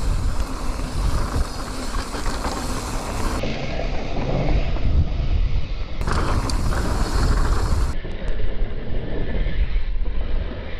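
Wind rushing over a GoPro's microphone mixed with the rumble of knobbly tyres on a dry dirt trail and rattling from a full-suspension mountain bike descending at speed. The sound goes muffled in two stretches, in the middle and near the end.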